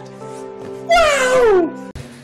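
Meme sound clip: music holding a steady chord, with a loud, long vocal cry that slides down in pitch about a second in. It cuts off abruptly near the end.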